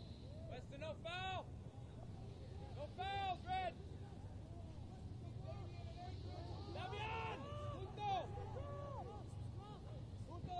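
Soccer players shouting short calls across the pitch, heard faintly and at a distance. There are a few shouts about a second in, two about three seconds in, and a cluster of calls around seven to eight seconds in, all over a steady low hum.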